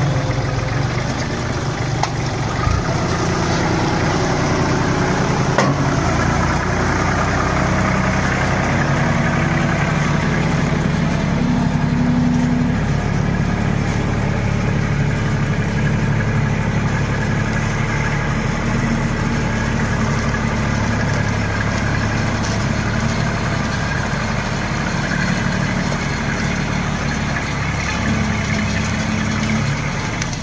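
Kubota compact diesel tractor's engine running steadily while its front-end loader works logs, with two short knocks about three and six seconds in.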